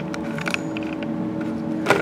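Handling noise from a camera being picked up and moved: a few small clicks and rattles, then a sharper knock near the end, over a steady low hum.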